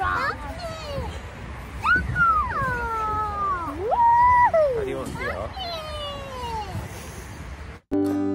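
Young children's high-pitched voices crying out on a spinning fairground ride: several long, falling cries and one held high note about four seconds in, with no clear words. The cries stop near the end and guitar music begins.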